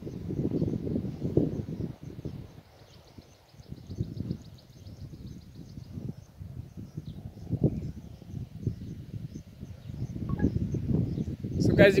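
Gusty wind buffeting a phone microphone, a rough low rumble that rises and falls, easing off briefly about three seconds in. A faint rapid high trill is heard in the middle, between about two and six seconds.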